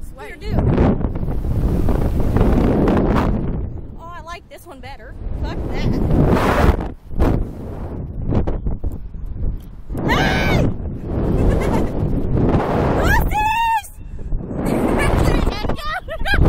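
Wind rushing and buffeting over an onboard microphone as a Slingshot reverse-bungee ride flings its riders about, with women's voices shrieking and laughing in high, wavering yells, about four seconds in, around ten seconds, and loudest about thirteen seconds in.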